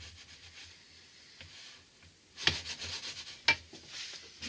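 Wooden fork stirring and scraping through gravy and sausages in a frying pan: faint at first, louder from about two and a half seconds in, with a sharp knock of wood on the pan about a second later.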